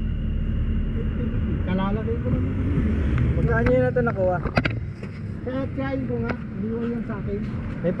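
A low rumble of road traffic, heaviest in the first half and dropping away after about four and a half seconds, with voices talking in short phrases over it.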